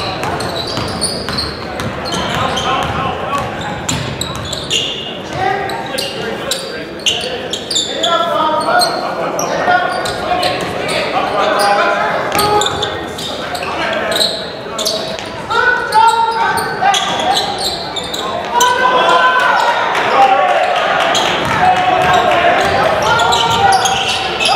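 A basketball bouncing on a hardwood gym floor during live play, in many sharp strikes, with players' and spectators' voices and calls echoing in the gymnasium, growing louder in the second half.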